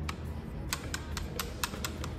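A quick, irregular run of about seven sharp clicks over a steady low hum.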